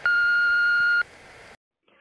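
A single voicemail beep: one steady, high-pitched tone about a second long, followed by a brief faint hiss of phone-line noise that cuts off.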